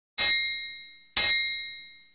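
Countdown sound effect: two bright metallic dings about a second apart, one per number, each ringing out and fading before the next.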